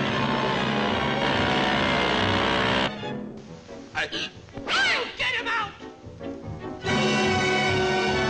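Orchestral cartoon score that stops about three seconds in. In the gap come a few sharp sound effects and a high, pitch-bending cartoon voice without words. The orchestra comes back in near the end.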